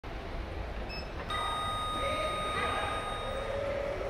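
OTIS Gen 2 lift's arrival chime: a ringing electronic tone starts suddenly just over a second in and holds for about two seconds, signalling that the car has come to go up. A faint short beep comes just before it.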